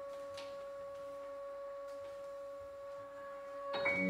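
Contemporary chamber music: a single quiet, steady pure tone, almost without overtones, held unchanged for nearly four seconds with a fainter tone an octave above. Just before the end the ensemble comes back in with a louder attack of many pitches.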